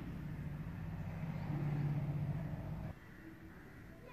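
A low, steady background hum that swells a little and then stops abruptly about three seconds in.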